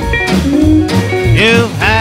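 Rockabilly band music with a steady upright-bass beat and guitar, the singer's voice coming back in near the end.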